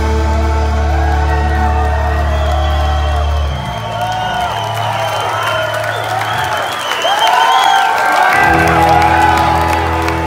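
Rock band holding a final ringing chord as the song ends. The low notes break off about three and a half seconds in and come back near the end, while the crowd cheers, whistles and claps.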